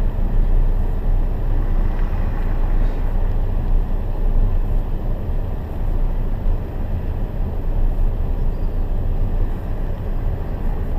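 Steady low rumble heard from inside a stopped car through a dashcam microphone, with other cars passing on a wet road.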